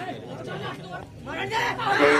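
Men's voices and crowd chatter, getting louder in the last half second or so.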